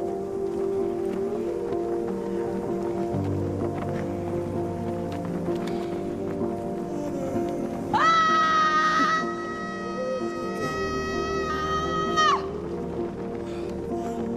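Background film music with sustained tones throughout. About eight seconds in, a young woman lets out a long, high, loud scream, held at one pitch for about four seconds before it stops abruptly.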